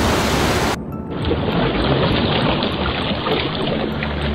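Rushing water from a warship's bow cutting through the sea, with background music. A little under a second in, the rush turns abruptly duller and loses its hiss.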